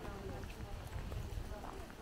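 Footsteps on a gravel path, with faint voices talking in the background.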